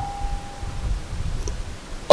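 A pause between speech: low background hiss and rumble, with a faint steady tone left over from the voice that fades out within the first second.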